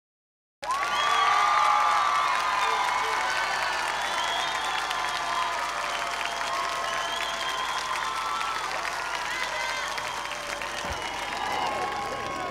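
Concert audience applauding and cheering, with many voices calling out over the clapping. It starts suddenly about half a second in, is loudest in the first couple of seconds, then slowly dies down.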